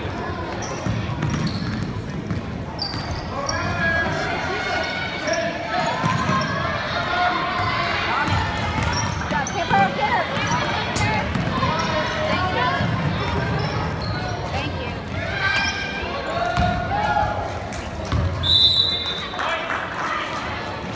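Basketball being dribbled on a hardwood gym floor, with voices of players and spectators calling out throughout. Near the end a referee's whistle blows once for about a second, stopping play.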